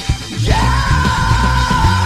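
Indie rock song with drums and bass; after a brief dip, a voice comes in about half a second in and yells one long held note.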